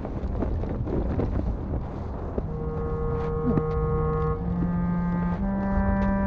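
Storm wind rumbling, with scattered faint crackles of blown debris. About two and a half seconds in, a sustained low organ-like chord from the film score enters and steps up in pitch twice.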